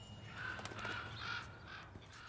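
Crows cawing faintly: a series of short calls in quick succession.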